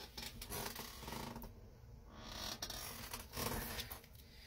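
Rustling and light clicking from a person bending down to pick up a fallen tarot card and handling it.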